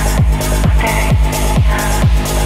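Techno music from a DJ set: a four-on-the-floor kick drum about twice a second over a steady bass, with hi-hats and a short synth stab.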